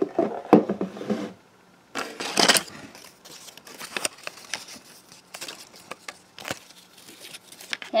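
A paper slip rustling and crinkling as it is handled, with scattered light clicks and taps of plastic toy figures being moved on a tabletop.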